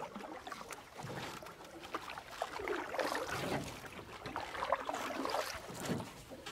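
Water trickling and gurgling irregularly.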